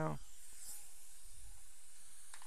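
Dental suction running with a steady airy hiss.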